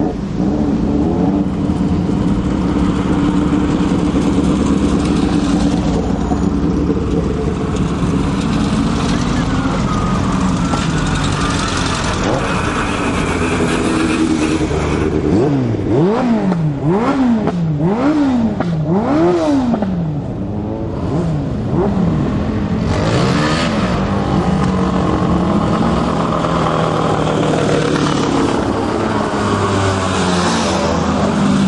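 Piaggio Ape three-wheeler race vehicles climbing a hill road under hard throttle, their small engines running loud and high-revving. Around the middle, one engine's note climbs and drops four times in quick succession.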